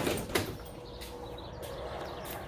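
Metal roll-up garage door rattling as it is handled, with a few quick clanks in the first half-second, then only a faint steady hum.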